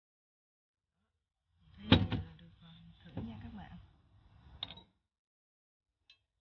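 A wire whisk knocking against a ceramic mixing bowl: one loud knock about two seconds in and a sharp click near the end, with a low voice murmuring in between.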